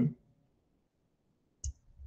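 The end of a man's drawn-out hesitation sound "eh", then near silence broken by one short, sharp click near the end.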